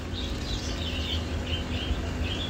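Faint, scattered chirps of small birds over a steady low hum.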